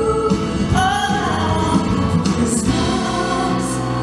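Live concert music: a male lead singer with a band and orchestra, backed by a group of singers.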